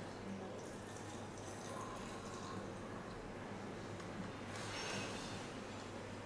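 Distilled water squirted from a plastic syringe into a small plastic bottle of soil sample, faint, in two short spells about a second in and near the end, over a low steady hum.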